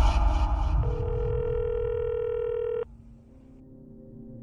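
Telephone ringback tone heard down the line: one steady beep of about two seconds that cuts off sharply. A call is ringing through at the other end. It follows the low rumble of the preceding music dying away.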